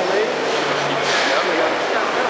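Overlapping voices talking over steady hall noise, with a short hiss about a second in.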